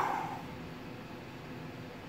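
A short breathy sigh through a hand at the very start, fading within half a second, then steady faint room hiss with a low hum.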